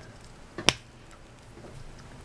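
A single sharp plastic click about two-thirds of a second in: a 3.75-inch action figure's head being popped onto its neck peg.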